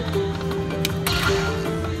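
Aristocrat Lightning Link slot machine playing its free-spin bonus music while the reels spin, with held electronic notes and a sharp click a little under a second in.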